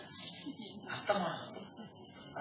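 Crickets chirping in a steady high trill, heard in a lull between spoken lines, with a faint voice around a second in.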